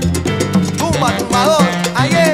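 Salsa music in an instrumental passage: a steady bass line under regular percussion strikes, with melodic lines that bend up and down in pitch.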